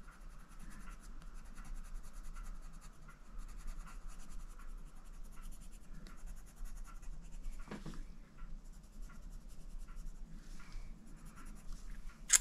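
Prismacolor Premier coloured pencil scratching faintly on colouring-book paper in many short strokes as the coral is filled in with colour.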